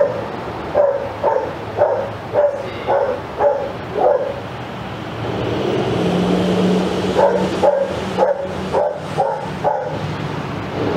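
A dog barking repeatedly, about two barks a second, stopping for a few seconds midway and then starting again.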